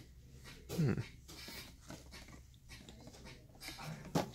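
A man's short, falling "hmm" about a second in, then faint shop background noise.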